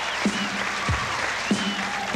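Studio audience applauding and cheering over the opening of a slow funk track. A deep electronic drum hit drops in pitch about every 0.6 seconds under the crowd noise.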